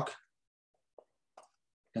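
A man's speech trails off, followed by near silence with two faint, very short clicks about a second in, a little under half a second apart. His speech resumes at the end.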